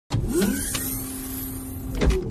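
Logo-intro sound effect: a loud, noisy rush over a low rumble, with short rising tones near the start, a steady low hum and two sharp clicks in the first second.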